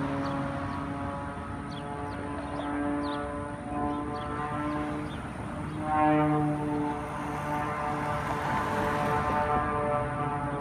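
Distant propeller-driven aerobatic plane's engine droning, its pitch stepping up and down as it manoeuvres, loudest about six seconds in.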